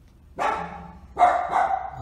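A dog barking twice, the second bark louder.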